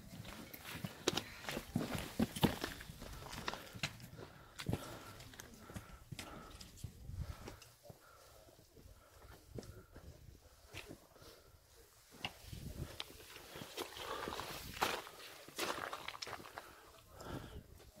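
Footsteps of a hiker climbing over rough rock and loose stones: irregular steps and scuffs of boots on stone, quieter for a few seconds in the middle.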